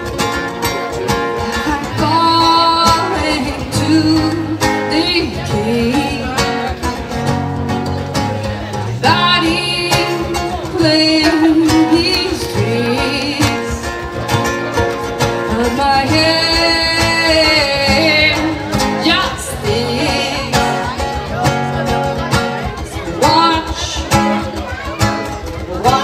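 Two acoustic guitars playing live together in an instrumental stretch of a song, with a voice singing long wordless notes at times.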